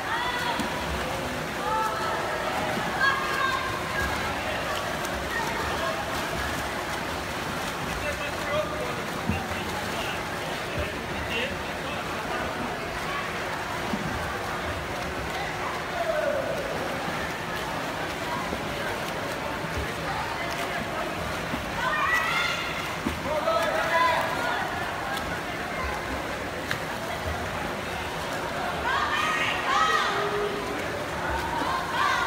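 Spectators shouting and cheering for swimmers over the steady splashing of freestyle swimming. Louder bursts of shouting come about halfway through, again around three quarters of the way in, and at the end.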